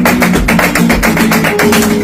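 Flamenco acoustic guitar played in fast, rhythmic strummed strokes, with hand-clapping palmas keeping time. The music stops near the end as the piece finishes.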